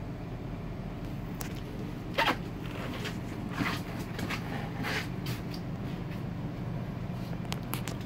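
A steady low hum, with scattered clicks and knocks from footsteps and handling. The loudest knock comes a little over two seconds in.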